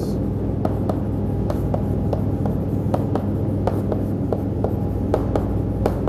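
Chalk writing on a chalkboard: a string of short, irregular taps and scratches as letters and bond lines are drawn, over a steady low hum.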